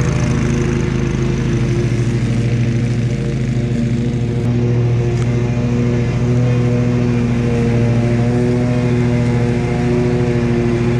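Bad Boy Elite zero-turn mower's engine running steadily with the cutting deck engaged as it mows a wet hillside, its pitch wavering only slightly.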